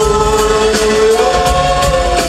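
Live pop-rock song: a man sings one long held note into a microphone over band accompaniment.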